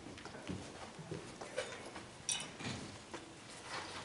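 Faint, irregular footsteps and small knocks of people moving around the front of the room, a few soft steps spread over the few seconds.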